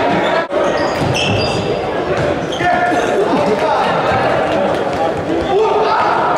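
Indoor futsal match in a sports hall: the ball being kicked and bouncing on the hard court floor, with players and spectators calling out, all echoing in the large hall. There is a brief dropout in the sound about half a second in.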